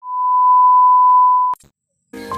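A single steady electronic beep, one pure tone held for about a second and a half, then cut off with a click.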